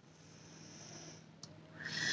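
A woman's faint breathing through the nose and mouth: a soft breath, a small click about one and a half seconds in, then a louder breath drawn in near the end.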